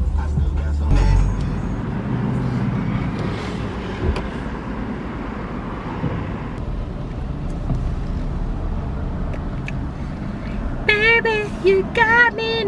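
Steady engine and road rumble inside a car's cabin while driving. Music with a heavy bass beat fades out in the first second or so, and a woman's voice comes in near the end.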